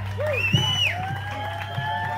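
Live rock band on electric guitars, playing long sustained notes with short pitch bends through the stage amplification.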